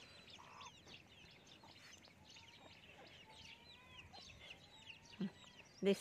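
Faint, busy chirping of many small birds, with chickens clucking in the distance.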